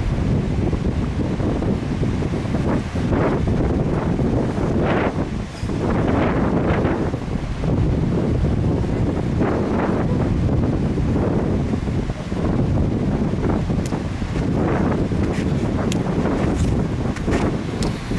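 Wind buffeting the camera's microphone: a steady, loud, low rumble.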